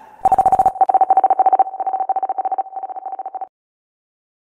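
A single electronic beep tone chopped into rapid pulses, in three groups that get quieter, cutting off suddenly about three and a half seconds in. A short burst of hiss comes just before the tone begins.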